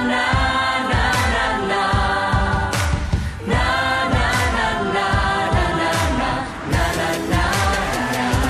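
Background music: a pop song with sung vocals over a steady beat.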